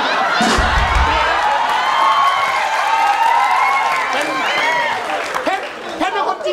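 Studio audience laughing and applauding, many voices at once. A low thump comes about half a second in.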